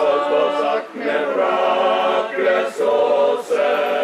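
A choir singing a song in Slovene without accompaniment, holding notes in phrases broken by short breaths.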